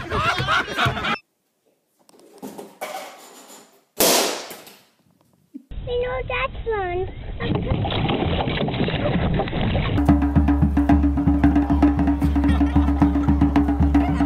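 Voices from several short clips, a sudden noisy burst about four seconds in that dies away within a second, then music with a steady beat in the last few seconds.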